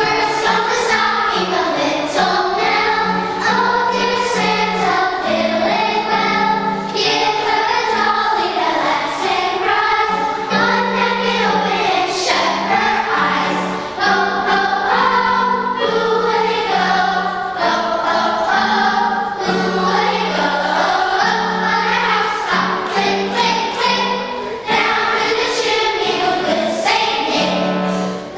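Children's choir singing together, with accompaniment holding steady low notes underneath.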